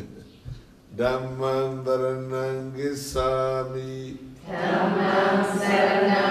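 Buddhist chanting in call and response: after a short pause, a single low voice chants in long held notes, then a group of voices answers in unison near the end.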